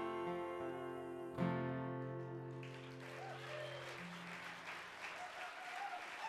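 Acoustic guitar and voice hold the song's last chord, then a final strum about one and a half seconds in rings out and fades. Audience applause with a few cheers builds from about halfway through.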